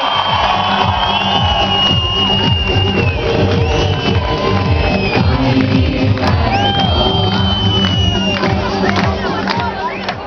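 Loud music played over a large crowd cheering and shouting, with no break.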